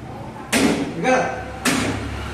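A large knife chopping down through a whole tarpon's scaled body into a wooden cutting block: two heavy strikes about a second apart.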